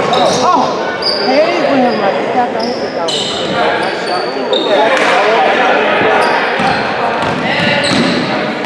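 Indoor basketball game in a gym: a basketball bouncing on the hardwood floor and sneakers squeaking in short, high-pitched chirps, over the steady talk and calls of spectators and players echoing in the hall.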